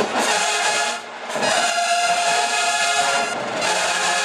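Brass-heavy HBCU-style marching band with sousaphones playing in the stands. It is loud, dips briefly about a second in, then holds a sustained chord for about two seconds.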